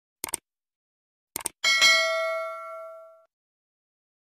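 Subscribe-button sound effect: a pair of quick mouse clicks, another pair about a second later, then a bright notification bell ding that rings and fades over about a second and a half.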